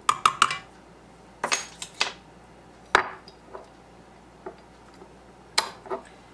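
Sharp clinks and clicks of glass and metal as a swing-top glass bottle and metal measuring spoons are handled: a quick cluster at the start, then single knocks spaced out over the next few seconds. The stand mixer is not running.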